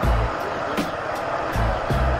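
Music with a steady beat: short bass pulses and regular sharp ticks, over an even background hiss of motorcycle and road noise.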